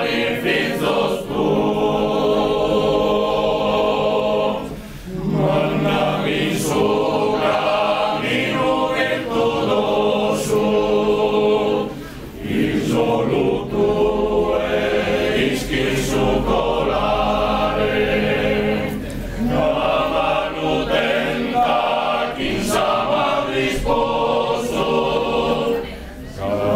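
Sardinian male choir singing a cappella in close harmony, sustained chords sung in long phrases with brief breaks between them about every seven seconds.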